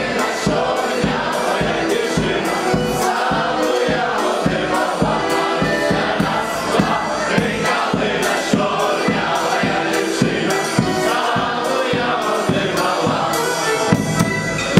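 Live wedding band playing a Ukrainian folk song: a bass drum with a cymbal on top beating a steady rhythm about twice a second, with saxophone and accordion, and many voices singing together.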